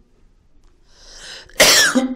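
A man breathes in and then coughs once, sharply and briefly, about one and a half seconds in.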